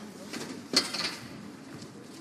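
Faint cageside sound with distant voices and one sharp knock about three-quarters of a second in.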